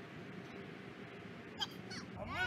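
Steady outdoor background noise, with one short high-pitched call near the end.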